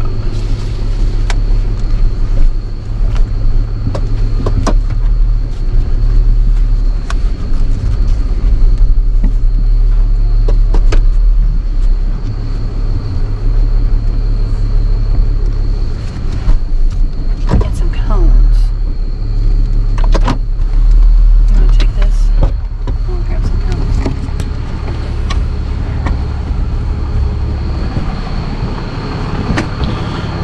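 Tow truck engine running with a steady low rumble, heard from inside the cab, with a thin steady high tone over it and scattered clicks and knocks.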